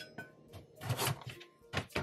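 Kitchen knife cutting through a carrot onto a plastic cutting board: three chops about a second apart, over background music.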